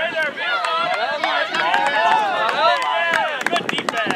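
Several players' voices shouting and yelling at once, high and overlapping, with no clear words, then a quick run of short sharp clicks near the end.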